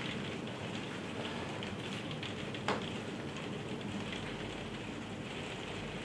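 Steady rain falling on the glass roof and windows of a conservatory, with one small sharp tap a little before halfway.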